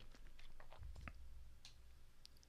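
Near silence: faint room tone with a low hum and a few small, soft clicks.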